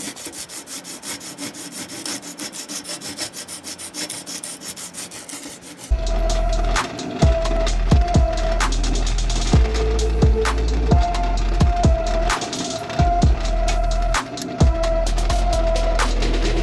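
Rapid back-and-forth strokes, about four a second, of hand-shaping a wooden handle scale held in a vise. About six seconds in, a drill press starts with a steady hum and drills pin holes through the wooden handle and steel tang, stopping and starting several times with clicks between runs.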